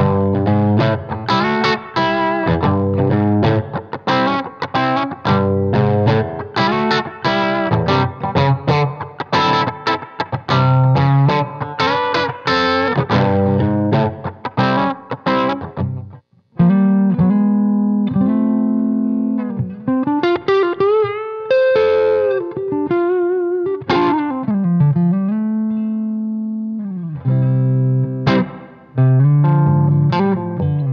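Electric guitar, a Novo Serus J strung with 10–46 gauge strings, played through a Hiwatt Custom 20 amp and 2x12 Fane-loaded cabinet, miked up: the baseline tone of the heavier strings. Quick picked notes and chords for about the first half, a brief break, then held notes with string bends and vibrato, and faster picking again near the end.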